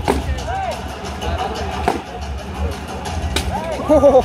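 Weapons striking steel plate armour in a close melee: three sharp impacts spread over a few seconds, amid shouting voices.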